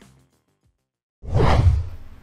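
Transition whoosh sound effect with a deep low rumble under it, setting in suddenly just past the middle and dying away by the end. Before it, the tail of the background music fades into about a second of silence.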